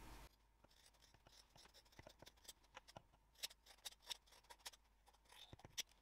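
Faint, irregular snips of fabric scissors trimming the seam allowances of a sewn, lined canvas bag.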